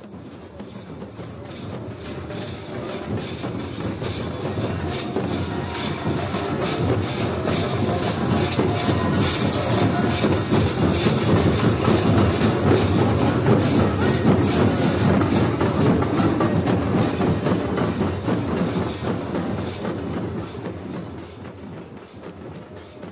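Devotional percussion ensemble: large barrel drums beaten together with many pairs of brass hand cymbals (jhanj) clashing in a fast, continuous clatter. It swells in, is loudest in the middle, and fades out near the end.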